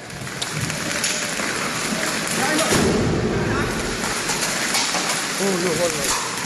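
Hail and heavy rain pelting a wet paved surface, a dense steady patter that swells about halfway through. A person's voice is heard briefly near the end.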